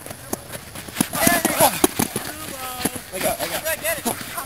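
Men's voices shouting and calling out during a game, over irregular sharp knocks and thuds.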